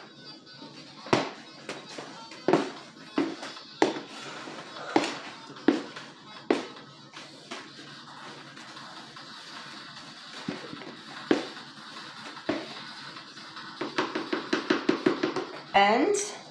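Spoon knocking and scraping against a plastic storage bin while stirring a batch of homemade powdered laundry detergent. The knocks are irregular, a second or so apart, with a quick run of taps near the end.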